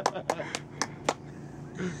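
A quick run of about five sharp clicks or taps, roughly a quarter second apart, followed near the end by the start of a man's laugh.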